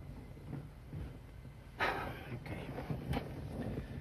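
A person's short audible breath about two seconds in, against low background noise.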